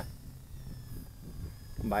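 Faint high whine of the Beta85X HD cinewhoop's brushless motors as it flies past, in thin steady tones that begin about half a second in. A low wind rumble runs under it on the microphone.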